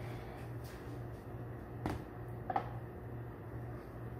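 Two short, light knocks a little over half a second apart, over a steady low hum.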